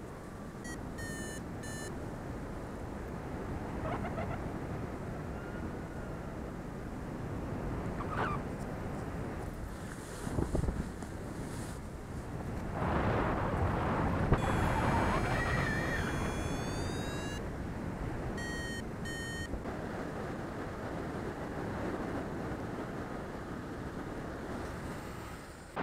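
Wind rushing over the microphone of a camera on a paraglider in flight, with short runs of electronic beeping about a second in, around the middle and again a few seconds later.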